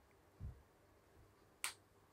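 Near silence in a small room, broken by a soft low bump about half a second in, then one short, sharp click about one and a half seconds in.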